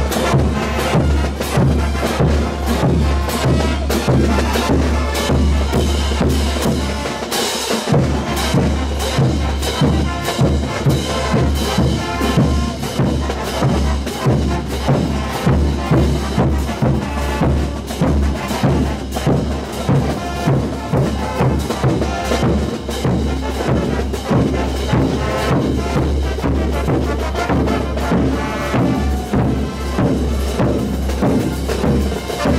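Bolivian street-parade brass band playing festival dance music, with bass drums, snare and cymbals keeping a steady beat. The low drums drop out briefly about seven seconds in.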